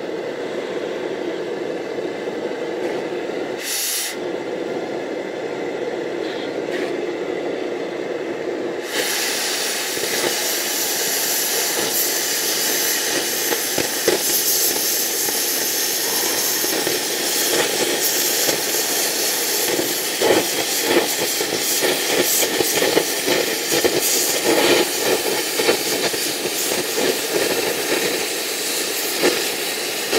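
Oxy-acetylene cutting torch: the preheat flame runs with a steady low rush, with a short high hiss about four seconds in. About nine seconds in, the cutting-oxygen jet comes on with a loud high hiss, and the torch cuts through steel plate with a continuous crackle of spatter.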